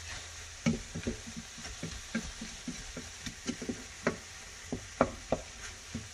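Wooden spoon stirring a steaming skillet of turkey and vegetables, with irregular scrapes and knocks against the pan over a steady sizzle from the food cooking on low heat.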